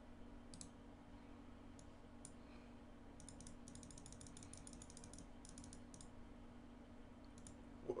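Faint clicks from a computer mouse and keyboard: a few separate clicks, then a quick run of clicks lasting about three seconds, over a low steady hum.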